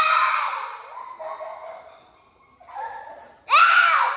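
A girl's high-pitched wordless yell trailing off in the first half-second, then a second short high yell that rises and falls near the end.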